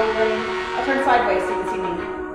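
Background music with a held chord and a voice singing over it.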